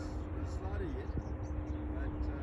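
Outdoor wind rumbling on the microphone, with a thin steady hum running underneath and a few faint, short gliding calls.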